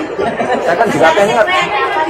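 Several people talking at once in a crowd: overlapping, indistinct chatter with no one clear voice.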